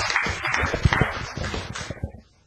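Audience applauding, a dense patter of many hands clapping that fades and cuts off abruptly at the end.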